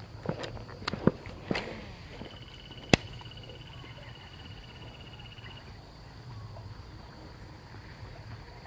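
Footsteps through dry palm fronds and undergrowth, with several crackling snaps in the first three seconds, the sharpest about three seconds in. An insect drones steadily throughout, and a rapid ticking trill runs for a few seconds in the middle.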